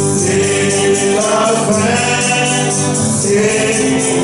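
Group singing a French gospel chorus, led by a man on a microphone, over a steady beat of shaken percussion.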